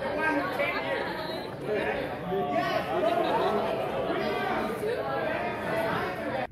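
Many people talking over one another in a large hall as they greet each other and shake hands.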